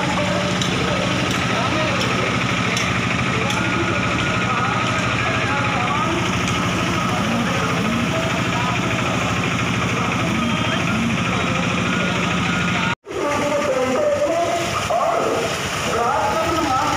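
Police SUV engines running as a convoy moves off slowly, with indistinct voices over a steady engine hum. The sound drops out abruptly for a moment about three-quarters of the way through.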